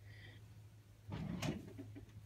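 Faint knocks and scrapes of small plastic toy figures being handled on a tabletop, starting about a second in, over a low steady hum.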